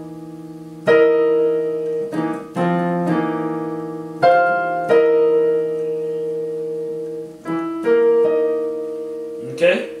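Technics digital piano playing a series of two-handed chords, each struck and left to ring and fade, with a quick flurry of notes near the end.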